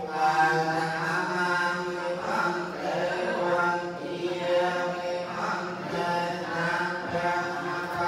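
Theravada Buddhist monks chanting together in long, held notes that shift every second or two.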